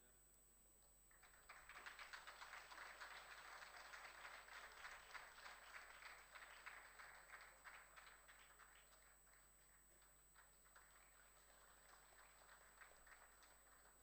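Faint applause from an audience, starting about a second in, fullest over the next few seconds, then thinning out toward the end.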